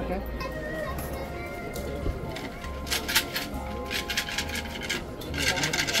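Wooden omikuji box being shaken, the numbered fortune sticks inside rattling in short bursts, with background music.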